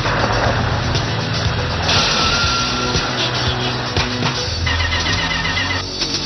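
Television action-series soundtrack: dramatic music mixed with the sound of a vehicle engine and road noise.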